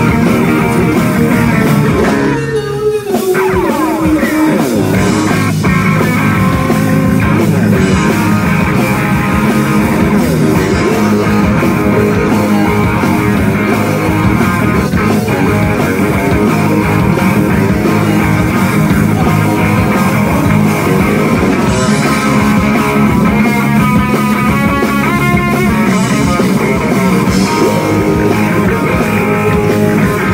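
Live rock band playing loud: electric guitars, bass guitar and drum kit. About three seconds in the sound dips briefly with a falling glide in pitch.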